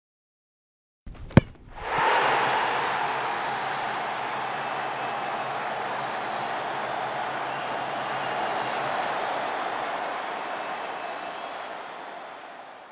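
Intro sound effects: a single sharp kick-like knock about a second and a half in, then a long, even rushing noise that slowly fades.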